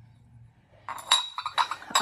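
Ceramic Scentsy wax warmer being handled: several light clinks of ceramic on ceramic, each with a short ringing, starting about a second in.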